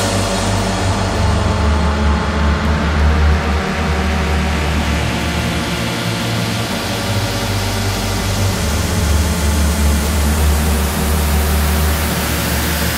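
Electronic dance track in a breakdown with no drum beat: a sustained synth bass and chord hold under a swelling noise sweep that opens up and rises towards the end.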